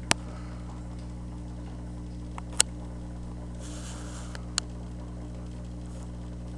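A steady low hum with a few sharp clicks, the loudest about two and a half seconds in, and a brief soft hiss just before four seconds.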